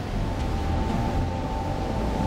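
Rushing floodwater: a deep, steady rumble of churning water, with one high sustained note held over it.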